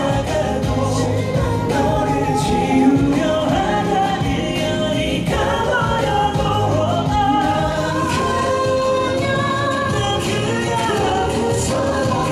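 Male K-pop vocal group singing live into handheld microphones over the song's backing track, several voices together in a slow ballad line.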